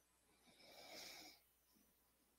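Near silence, broken by one faint breath lasting about a second in the middle.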